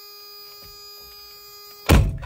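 1992 Toyota Pickup's key-in-ignition warning buzzer sounding a steady buzz with the driver's door open, warning that the keys are left in the ignition. Near the end the door is slammed shut with a loud thud, and the buzzer stops.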